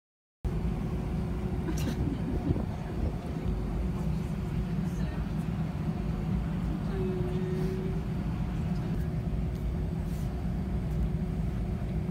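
Airliner cabin noise: a steady low rumble with a constant hum, starting about half a second in.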